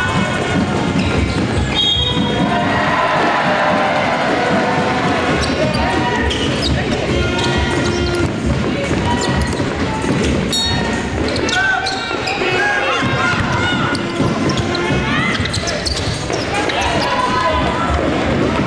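Live basketball game sound in a sports hall: a basketball bouncing on the court floor, among players' and spectators' voices, with music playing.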